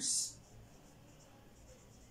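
Dry-erase marker writing on a whiteboard: faint, short strokes as a word is written.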